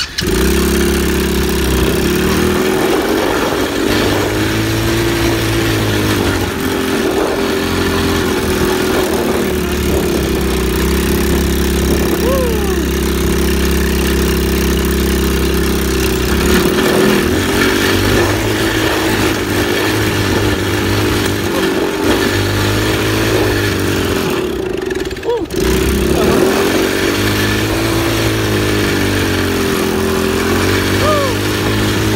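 ATV engine running under way, its pitch rising and falling as the throttle opens and eases, with wind rushing over the microphone. There is a brief lull about 25 seconds in.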